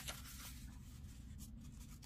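Faint rustling of a small prayer book's thin paper pages as a hand turns a page and smooths it flat, with a few light scratchy touches.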